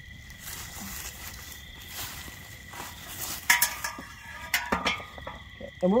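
A titanium camp pot being lifted off a cooking tripod's hook and handled, giving a few short metallic clinks about three and a half and nearly five seconds in, with light footsteps on grass. A steady faint high insect trill runs underneath.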